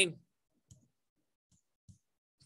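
A few faint, short clicks in near silence, just after the end of a man's spoken word.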